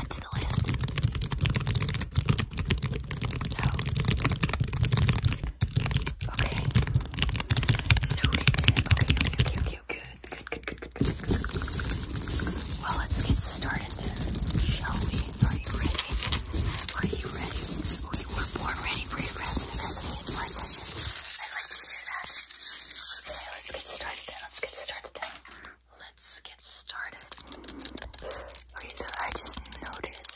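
Close-miked ASMR whispering with a dense, rapid run of small clicks and rustles from quick hand movements at the microphone. There is a brief dip about ten seconds in, and the sound thins out in the low end about two-thirds of the way through.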